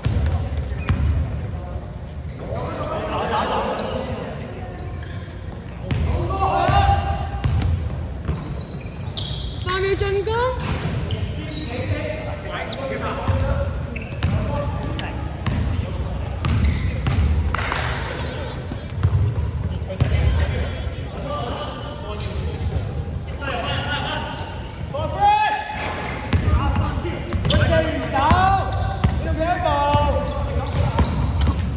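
Basketball being dribbled and bounced on a wooden gym floor during live play, heard as repeated low thuds, with players' voices calling out across the hall.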